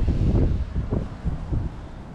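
Strong wind buffeting the camera's microphone in gusts: a heavy, uneven low rumble that eases off near the end.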